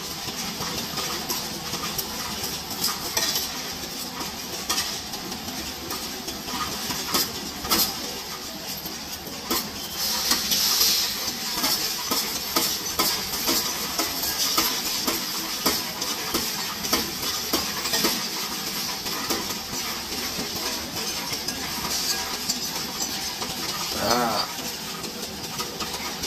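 Loose coins being pushed by hand into a Coinstar coin-counting machine, clinking and rattling continuously as they drop through and are counted, with a louder spell of clatter about ten seconds in.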